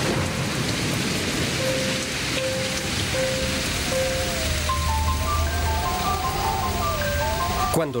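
Steady hiss of falling rain with gentle music over it: a soft note repeated a few times, then from about halfway a slowly wavering gliding tone with a few higher notes above it.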